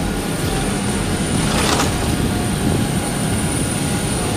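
Steady roar of aircraft engines, with a thin high whine running through it.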